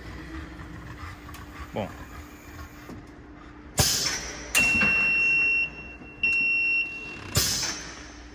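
Car lift lowering with a steady low hum. A click is followed by two long, steady high electronic beeps, about a second each, and then another click: the lift's warning as it comes down to the floor.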